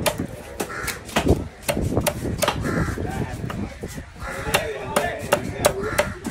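Heavy cleaver chopping trevally into chunks on a wooden block: repeated sharp knocks, irregularly spaced, about two a second. Crows caw repeatedly over the chopping.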